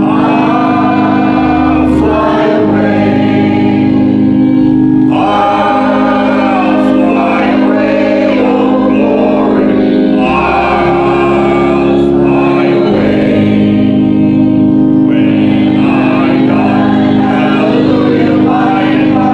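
Church congregation singing a hymn together in phrases of a few seconds, over an accompaniment of long held low notes.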